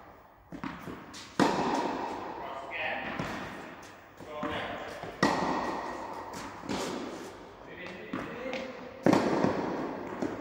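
A tennis racket striking a ball three times, about four seconds apart, each hit sharp and echoing around a large indoor hall. Softer knocks of the ball bouncing come between the hits.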